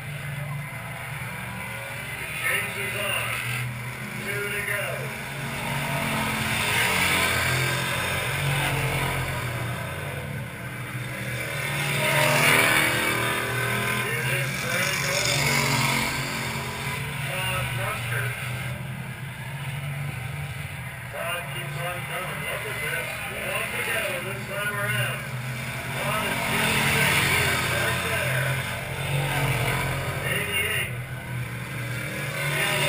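Stock car engines running around an oval short track, a steady drone that swells several times as cars pass, loudest about twelve seconds in, with voices in the background.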